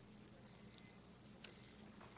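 Faint electronic timer beeping: two groups of short high beeps about a second apart, the debate timer signalling that the speaker's time is up.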